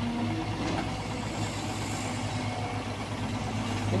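Diesel engine of a Caterpillar tracked excavator running steadily while it works, a low even drone, with a dump truck's engine close by.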